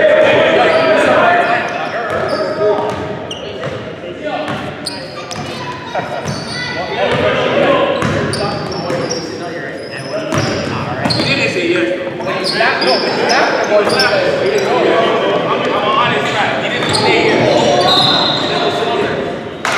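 Basketball being dribbled on a hardwood gym floor, with sneaker squeaks and indistinct shouts from players, all echoing in a large gym.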